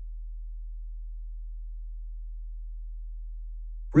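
A steady low-pitched hum: one unchanging tone with nothing else heard over it.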